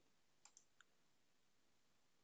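Near silence: room tone, with two or three faint short clicks about half a second in.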